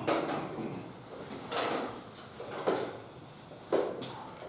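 About four short rustles and soft knocks, spread across a few seconds, from a large book and a wooden lectern being handled.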